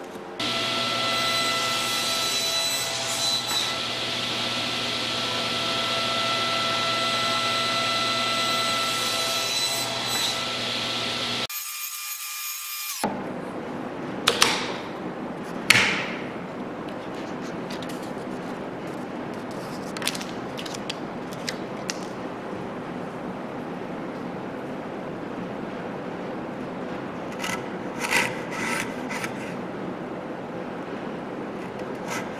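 A power tool runs steadily for about the first eleven seconds, with several held tones, then cuts off. After that a bench chisel pares pine in a half-lap joint, a quieter scraping broken by a few sharp cracks.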